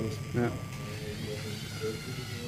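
LEGO Mindstorms NXT servo motors and plastic gears whirring with a thin steady whine that stops about a second in, under voices in the room.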